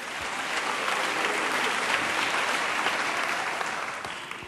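Congregation applauding after an emphatic line of a sermon, the clapping swelling over the first second and dying away near the end.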